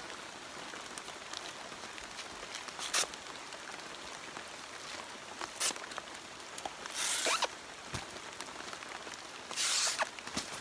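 Abaca leaf-sheath strips (tuxy) being torn off the stalk by hand, with two longer ripping tears near the end, the loudest sounds. Before them come a couple of short sharp clicks as the knife works into the sheath.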